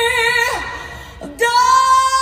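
Female singer holding a B-flat4 with vibrato that breaks off with a downward slide about half a second in, then, after a short quieter gap, slides up into a steady held C5.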